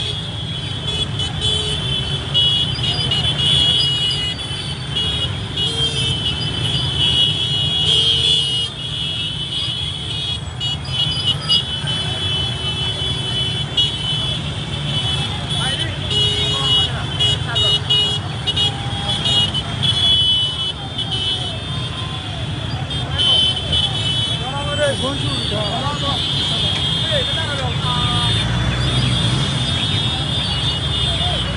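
Dense slow-moving procession of motorcycles and cars: engines running under a constant shrill, high-pitched tooting din, with voices shouting in the crowd.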